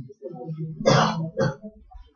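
A man clearing his throat: a low voiced rumble with its loudest, harsh burst about a second in and a shorter one just after.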